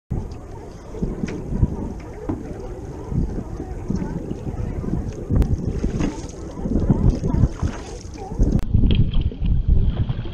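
Wind buffeting the camera microphone, an irregular low rumble that rises and falls in gusts while the camera moves over open water.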